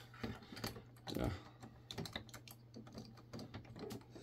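Hard plastic LEGO pieces clicking and rattling as fingers fit a broken-off section back onto a built model: a run of light, irregular small clicks.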